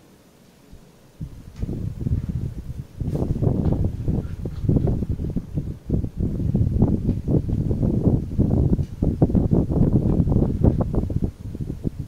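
Coloured pencil shading on paper lying on a desk: quick back-and-forth strokes scratching in a rapid, uneven run that starts about a second in and stops just before the end.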